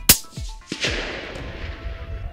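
A single rifle shot from a .22-250 sporting rifle, a sharp loud crack just after the start, fired while zeroing its night-vision scope. Under a second later comes a longer rushing sound that fades away. Background music runs underneath.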